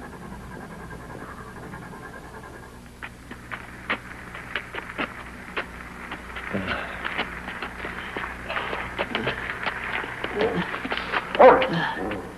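Two men pushing a stalled convertible by hand: a run of scuffing steps on the road, with heavy breathing and effortful grunts that grow denser from about halfway and peak in a loud grunt near the end.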